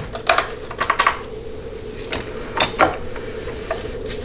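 Light metallic clinks and taps from a gloved hand handling the internal parts of a Ford C6 automatic transmission's open case, a cluster in the first second and a few more late on.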